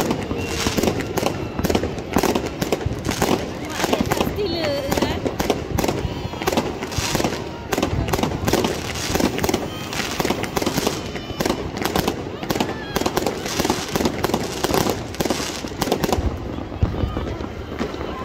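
New Year fireworks going off in a dense barrage: a rapid, continuous run of bangs and crackling from many shells and firecrackers bursting at once, several reports a second.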